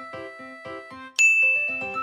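Gentle background music with soft held notes, then about a second in a bright chime sound effect rings out and holds, marking the next paint colour.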